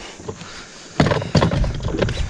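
A quiet second, then a sudden run of knocks and thumps with a rumble against the aluminum jon boat, lasting about a second.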